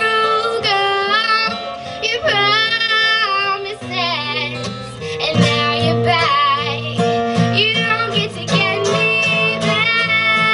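Live acoustic ensemble: a young singer holding wavering notes over acoustic guitar and mandolin accompaniment.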